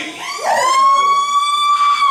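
Male rock vocalist holding one long, high sung note through the PA, sliding up into it and dropping away at the end.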